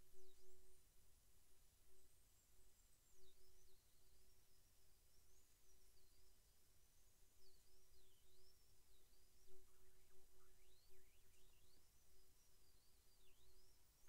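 Near silence: faint room tone with a very faint steady hum.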